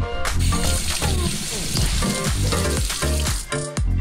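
A kitchen tap running into a sink for about three seconds, starting and stopping abruptly, under upbeat dance-style background music.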